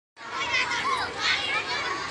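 A crowd of many children's voices chattering and calling out at once while they play.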